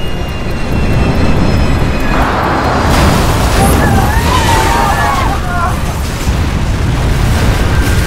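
Dramatized airliner crash approach: a heavy, continuous low rumble with rushing noise that swells about two seconds in, and several passengers screaming in the middle. A thin, steady high tone sounds near the start and again near the end.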